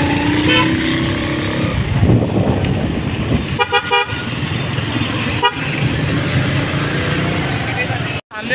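Street traffic: auto-rickshaw, motorcycle and van engines running close by. Vehicle horns sound a brief toot about half a second in, a quick run of short beeps around four seconds in and one more a little later.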